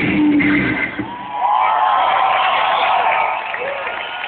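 Live rock band with electric guitar, bass and drums playing the end of a song through a festival PA. The bass and drums stop about a second in, leaving held guitar notes over crowd noise.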